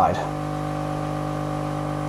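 Hot-air rework gun of a 2-in-1 soldering station running, its blower giving a steady, even hum.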